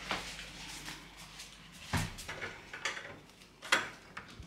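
A few soft knocks and handling sounds, then a sharper click just before the end as a door's lever handle and latch are worked.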